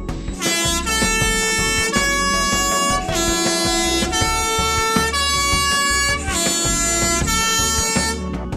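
Swiss PostBus three-tone horn sounding its three-note posthorn call over and over, in a middle–high–low order, each note held about a second.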